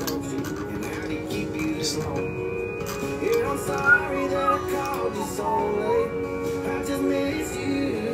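Background music with sustained chords, and a melody that bends in pitch from about three seconds in.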